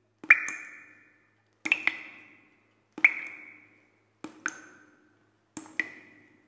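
Title-animation sound effects: a series of struck pings, each a sharp click followed by a ringing tone that fades within about a second, coming about every 1.3 seconds, some in quick pairs.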